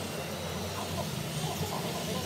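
Steady low hum of room noise, with faint indistinct sounds above it.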